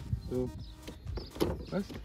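A single sharp click as the metal wheel bracket is pressed onto the plastic coop body, with a short spoken "so" just before it.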